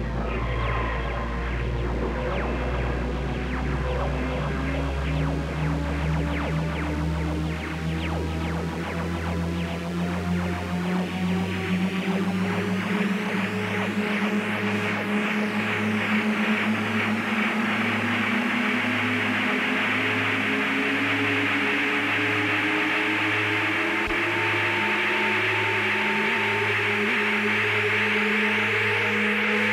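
Instrumental intro of a rock band's recorded song with an electronic sound, without vocals: sustained notes, a low note pulsing about once a second, and a long tone slowly rising in pitch through the second half.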